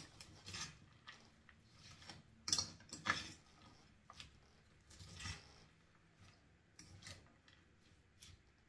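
A fork tossing dressed shredded cabbage and carrot coleslaw in a bowl: soft, irregular rustles and scrapes, the loudest a couple of strokes about two and a half and three seconds in.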